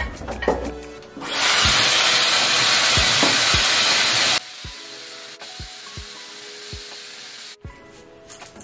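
Dyson hair styler blowing hot air through hair: a loud, steady rush of air that drops abruptly to a much quieter rush about four seconds in, then cuts off shortly before the end.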